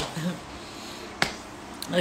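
A single sharp click a little past a second in, against quiet room tone.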